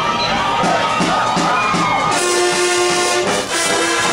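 High school marching band brass, sousaphones among them, playing: lighter, moving notes for about two seconds, then the full band comes in on loud held chords.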